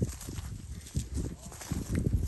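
Girolando heifers moving and grazing close by on dry pasture: irregular soft hoof steps and rustling of dry grass.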